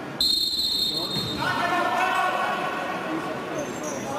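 Referee's whistle blown once, a sudden shrill blast of about a second just after the start, followed by a voice calling out.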